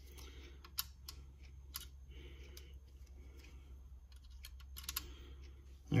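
Faint, scattered small clicks of steel screwdriver bits and a plastic bit organizer case being handled and sorted through, with a few clicks close together near the end, over a low steady hum.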